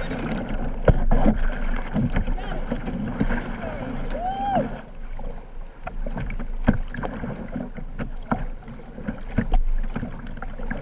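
Whitewater kayak paddling close to the boat: rushing river water with repeated splashes and knocks from the paddle strokes. About four seconds in there is a brief voice call that rises and then falls.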